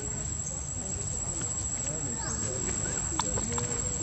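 Outdoor ambience: a steady high-pitched insect drone over a low rumble, with faint, brief vocal sounds and a few clicks in the second half.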